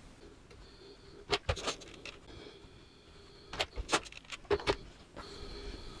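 Small handling sounds of fabric and a clear plastic quilting ruler being folded, smoothed and shifted on a wool felt pressing pad: a few short, light clicks and taps in two clusters, one about a second in and another from about three and a half seconds, over a quiet background.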